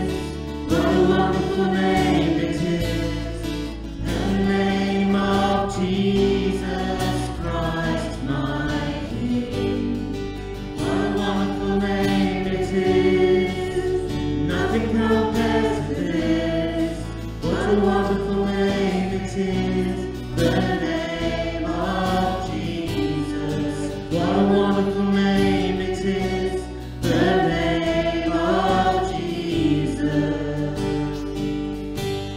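Live worship band: several voices singing a slow worship song together in sung phrases, over strummed acoustic guitars and a steady low accompaniment.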